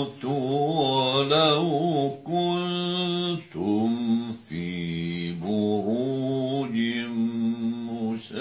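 An elderly man's voice reciting the Quran in slow, melodic tajwid style: long held notes with wavering ornaments, broken by several short pauses for breath.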